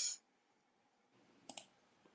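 A near-silent pause, broken about one and a half seconds in by one short, sharp click.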